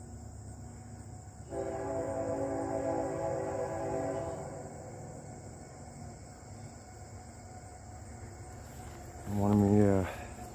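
A distant locomotive horn sounds one long, steady, chord-like blast of about three seconds, starting about a second and a half in.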